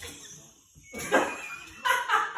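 A small dog yapping: a short call about a second in and another near the end.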